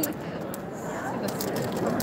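Paper and plastic tumbler wrap crinkling and rustling as it is peeled off a freshly heat-pressed sublimation tumbler, with a few small crackles, over the background chatter of a crowded hall.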